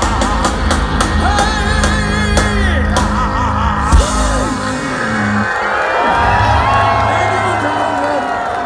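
Live ska-punk band playing through a festival PA, heard from inside the crowd, with shouted vocals over bass and drums. The song ends on a loud final hit about four seconds in, and the crowd then cheers and yells.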